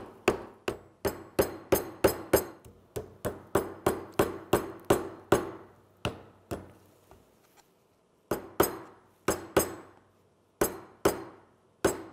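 Hammer tapping copper tacks through a thin bent wood band against a galvanized steel pipe anvil, in quick strikes about three a second, each with a short metallic ring. The tack ends mushroom out against the pipe to form rivet joints. The tapping slows and pauses for a couple of seconds past the middle, then picks up again.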